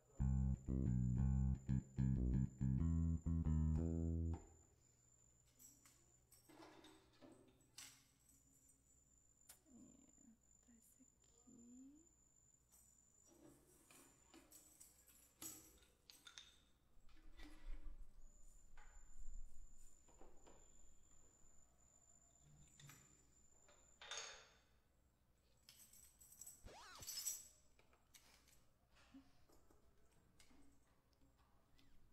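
Roland electric keyboard played in a loud burst of notes for about four seconds, then quiet clicks and knocks of equipment being handled, with short tambourine jingles near the end.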